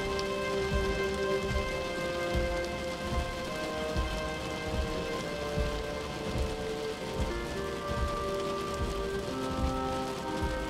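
Slow background music of held synth chords over a steady low beat, with a rain-like hiss beneath; the chord changes about seven seconds in.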